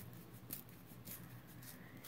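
Faint paper tearing and rustling as a printed paper strip is torn along its edge by hand, with a few soft crackles spread through the moment.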